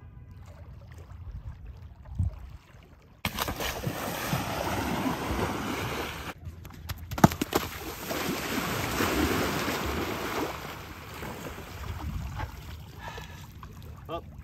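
Water splashing and wind rushing on the microphone as a skimboard is ridden across shallow water, starting abruptly about three seconds in and fading near the end, with one sharp knock a little after seven seconds.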